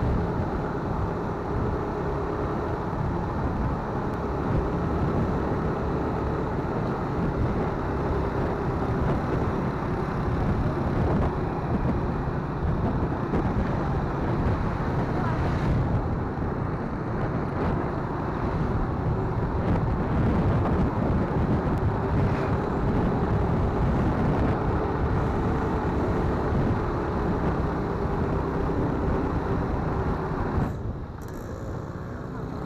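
Motorcycle engine running steadily while riding along a road, with wind and road noise over the microphone.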